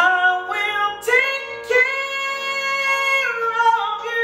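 A woman belting a gospel song over a piano accompaniment. Her voice slides up into a loud note at the start, comes in again twice, holds a long note, then steps down in pitch near the end.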